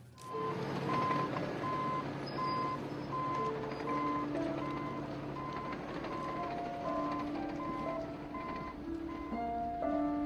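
A heavy-equipment back-up alarm beeps steadily at one pitch, roughly two beeps a second, over the low engine rumble of landfill bulldozers.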